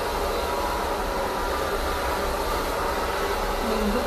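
A steady, even noise, a hiss with a low rumble under it, with no distinct events.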